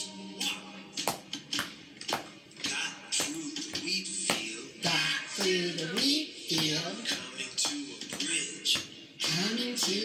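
Children's action song playing, with guitar and a voice chanting and singing in a swooping tune, over a steady beat of hand claps about two a second.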